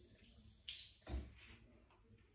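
Faint wet handling sounds as wet fingers rub water and cleanser over the peel of an orange. There is a short hiss just before a second in and a soft knock just after.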